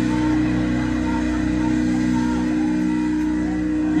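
Amplified electric guitar and bass holding one steady, droning chord through a live club PA: the build-up before a brutal death metal song begins.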